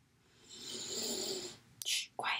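A woman breathing out audibly for about a second, like a sigh, followed near the end by a short sharp breath in.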